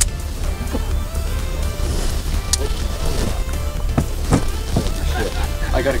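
Background music with faint voices of people nearby, a steady low rumble, and a few light knocks.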